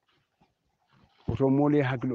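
Near silence, then a man's voice starting about halfway through with a drawn-out word.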